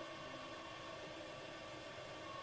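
Faint steady hiss with no distinct sound: a lull in the background music.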